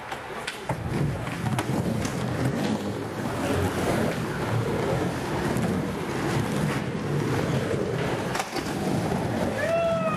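Skateboard wheels rolling and carving around a skatepark bowl: a steady rumble with occasional sharp clacks of boards.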